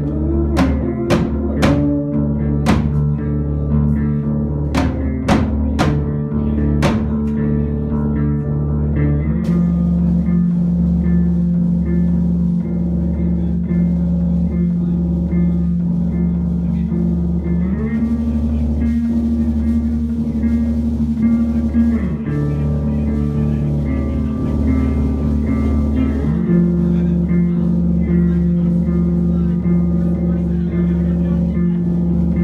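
Live rock band with synth keyboard, electric bass and drum kit playing. Sharp drum hits come in the first several seconds, then long sustained keyboard and bass notes that shift pitch every few seconds.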